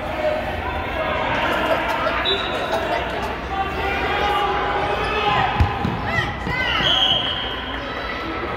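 A ball thudding on a hardwood gym floor, with one sharp hit a little past the middle, amid high children's voices calling out and echoing in a large gymnasium.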